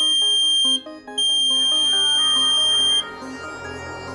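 Piezo buzzer on Arduino ultrasonic-sensor goggles sounding a loud, steady, high-pitched tone in two long beeps. The first cuts off under a second in; the second starts just after and stops about three seconds in. This is the alert that an obstacle is close in front. Background music with plucked notes plays underneath.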